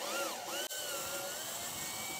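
Cordless drill running a self-tapping bit into a steel rock-slider bracket, cutting threads. It gives a steady whir with thin high tones that waver up and down in pitch as the bit works into the metal.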